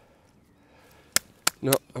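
Two sharp, very short clicks about a third of a second apart, followed by a man's voice saying "No".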